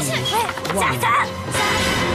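Game-show background music with overlapping voices and several sharp knocks in the first second and a half.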